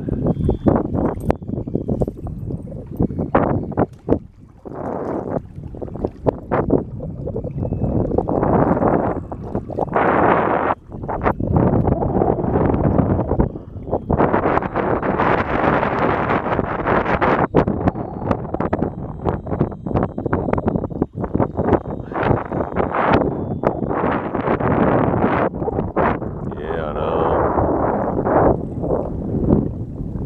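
Wind buffeting the microphone in gusts, with choppy water slapping and splashing against the hull of a canoe under way on a windy lake.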